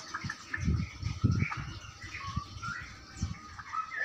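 Caged songbirds giving short chirps and calls at intervals, with several low thumps mixed in, the loudest about a second in.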